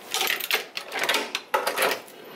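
Rattles and clicks of an apartment door's lock and handle as the door is unlocked and opened, in three short bursts, mixed with rustling from the camera being handled against the door.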